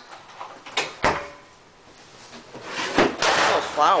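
Wooden elevator machine-room door being shut: two sharp clicks about a second in, then a heavier knock about three seconds in followed by a short rustle.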